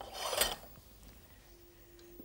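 A metal utensil scraping briefly across a frying pan as cooked chicken is lifted out of it, one short rasp in the first half second.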